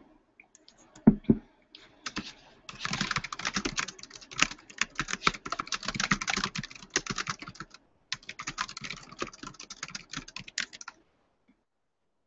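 Typing on a computer keyboard in quick runs of keystrokes, with a short break near the middle and stopping shortly before the end. Two low knocks about a second in are the loudest sounds.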